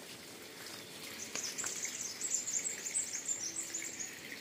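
Small birds twittering in soft, quick, high-pitched chirps. The chirps begin about a second in, over a faint background hiss.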